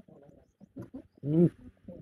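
Indistinct human voices over a video call, with one louder drawn-out vocal sound just past the middle.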